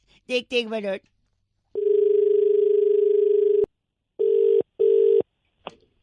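Telephone line tones as a call is redialled: a steady dial tone for about two seconds, then a double ring of the ringback tone, two short beeps at the same pitch in quick succession.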